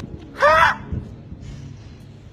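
A man's voice: one short high-pitched cry on the word "too" about half a second in, its pitch arching up and down. A faint low hum follows.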